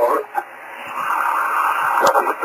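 Hiss from a 10 GHz amateur radio receiver's speaker, a narrow band of static that swells from about half a second in and holds steady, heard while waiting for the other station's reply on a rain-scattered path.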